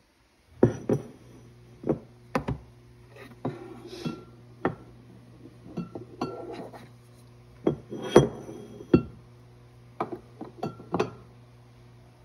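White ceramic canister and its wooden lid knocking and clinking against a countertop as they are handled and set down: about a dozen sharp knocks, some with a brief ringing after them, over a low steady hum.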